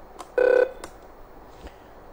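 A single short telephone beep, a steady electronic tone of a few fixed pitches lasting about a third of a second, with a light click just before and after it.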